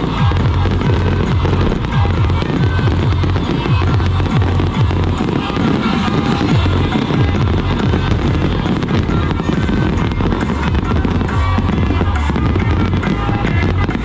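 Fireworks going off in rapid, continuous crackles and pops, over loud dance music with a heavy, steady bass.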